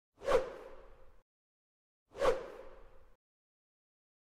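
Two identical whoosh sound effects of a logo intro, about two seconds apart, each starting sharply and fading out over about a second, with silence between them.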